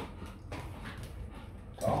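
Rottweiler whining softly while waiting to be fed, with a short click at the very start.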